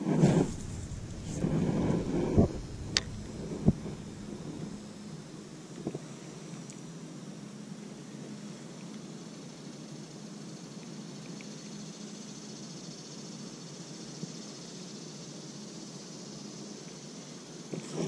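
Daiwa Legalis LT 3000 spinning reel being cranked through a slow retrieve: a faint steady whir, with some rustling and two sharp clicks in the first few seconds.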